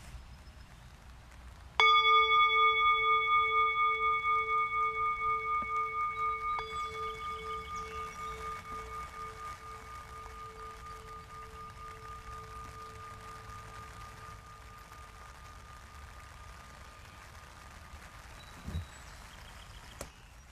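Tibetan singing bowl struck once, about two seconds in, ringing with a pulsing, wavering tone that slowly fades away over some fifteen seconds.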